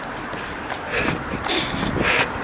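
A runner's footfalls and breathing on a handheld camera microphone, with wind rumbling on the mic, and soft bursts about one and one and a half seconds in.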